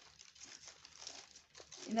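Faint crinkling of a plastic packet as hands press and smooth it flat against a steel plate.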